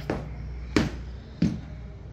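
Three heavy footsteps about two-thirds of a second apart, from stiff mountaineering boots walked on a hard floor.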